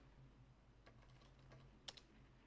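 A few faint keystrokes on a computer keyboard, the clearest one near the end, over a quiet steady hum.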